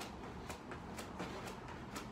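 Light footfalls on the floor as the legs switch in lunge exchanges, faint thuds about twice a second.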